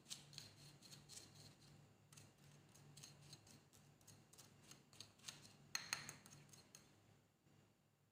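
Spoon scraping and clicking against a ceramic plate while stirring a gritty scrub of salt and baby cereal with olive oil. The sound is faint, with a louder flurry of scrapes about six seconds in, then fades near the end.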